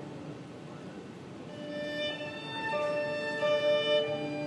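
A small Chinese traditional ensemble of erhu fiddles, yangqin hammered dulcimer and plucked lute is playing live. It is quiet at first. About a second and a half in, a bowed melody of held notes comes in and grows louder.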